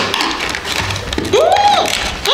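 Cardboard toy box being handled and its flap pulled open, a scratchy rustle with light taps. About a second and a half in, a child's voice gives one short rising-and-falling exclamation.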